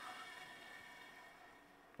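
Near silence with a faint hum that fades away over the two seconds: the bandsaw's blade and wheels coasting to a stop after the saw has been switched off.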